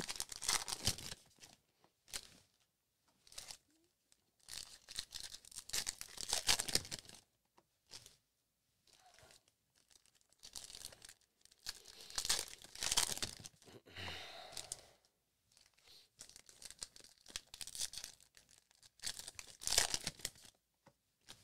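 Foil trading-card pack wrappers being torn open and crinkled in hand, in irregular bursts with short quiet gaps between them.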